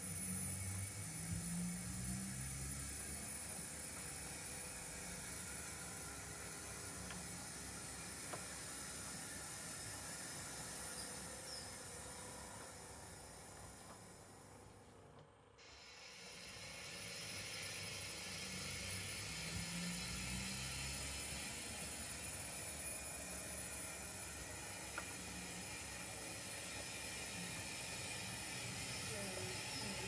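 Steam locomotive sound on a model railway, mostly a steady hiss of steam. It fades away about halfway through and fades back in a second or two later.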